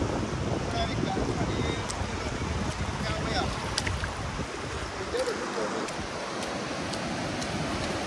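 Shallow surf washing in over wet sand, a steady rush of water with wind buffeting the microphone.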